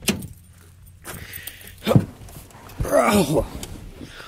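A person climbing up into the cab of a lifted pickup truck: rustling and handling noise, a sharp thump about two seconds in, keys jingling, and a short grunt near the end.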